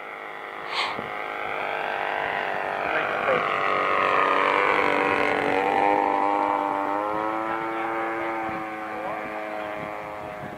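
Radio-controlled four-channel Piper Cub model's motor and propeller droning in flight, growing louder to a peak midway through and then fading as it passes, its pitch stepping up about seven seconds in.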